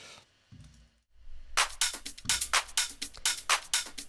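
Electronic drum mix playing back from the DAW, heard as the dry 'before' version without the parallel-compression bus. A low rumble comes in about a second in, then a steady run of sharp, crisp drum hits, about four a second, from about a second and a half in.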